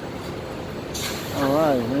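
A short, sudden hiss of air from a truck's air brakes about a second in, over a steady background hum; a man starts speaking just after.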